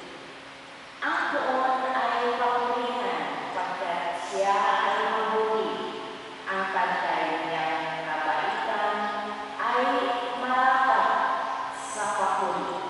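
A woman's voice through a microphone, speaking in phrases that start about a second in, with short breaks between them, over a faint steady hum.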